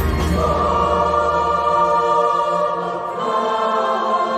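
Mixed choir singing sustained chords with band accompaniment in a church; the drums and bass die away in the first second or so, and the voices move to a new chord about three seconds in.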